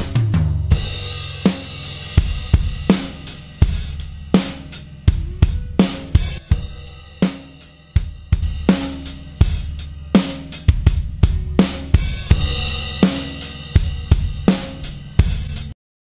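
Multitracked drum kit playing back a steady groove (kick, snare, toms, cymbals), with a heavily compressed and distorted parallel crush bus being slowly faded in underneath it. The playback stops suddenly just before the end.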